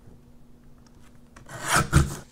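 Sliding-blade paper trimmer cutting through cardstock: a short noisy stroke of the blade carriage about a second and a half in, ending in a sharp click.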